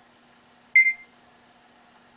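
iPhone barcode-scanner app giving a single short electronic beep about three quarters of a second in, the confirmation that the barcode has been read.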